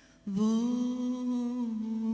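A woman's voice sings one long held note, coming in about a third of a second in after a brief break and dipping slightly in pitch near the end.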